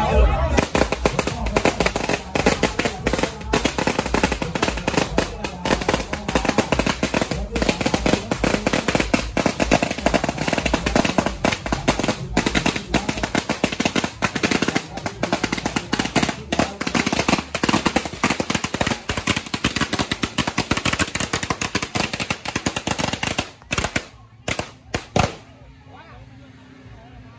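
A long string of firecrackers going off in a rapid, unbroken crackle of small bangs. It thins out near the end to a few last bursts and then stops.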